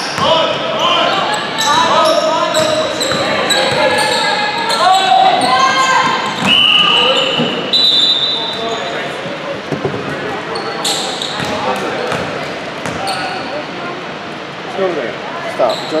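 Basketball game in a large gym: the ball bouncing on the hardwood floor, sharp sneaker squeaks and thuds, and players' voices calling out, all echoing in the hall. A long high-pitched sound comes about six and a half seconds in.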